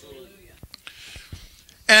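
Faint, low voices from the listeners answering the preacher's question, with a few soft clicks; a man's voice through a microphone comes in loudly near the end.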